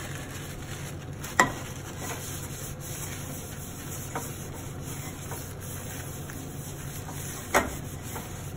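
A paper towel rubbed around inside a hot frying pan, wiping it clean, over a steady background hiss. Two sharp knocks stand out, about a second and a half in and near the end.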